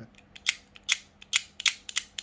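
Utility knife blade scraping the enamel coating off the end of copper magnet wire in about five short, sharp strokes. The scraping bares the copper so that the wire can carry current.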